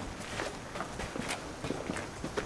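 Footsteps of people walking on a sandy dirt and stone path: several irregular steps.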